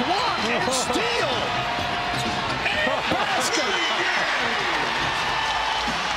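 A basketball being dribbled on a hardwood court, with arena crowd noise and voices in the background.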